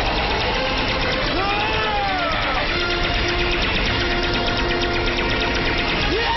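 Animated battle sound effects: a continuous low rumble with rapid crackling under an energy-beam attack, mixed with background music that settles into held notes. A wordless voice rises and falls about a second and a half in.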